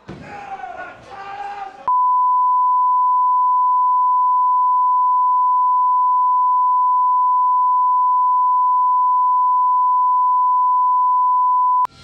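Broadcast line-up test tone accompanying colour bars: a single pure, steady beep at one pitch that starts abruptly about two seconds in and cuts off just before the end. Before it come voices from the wrestling event.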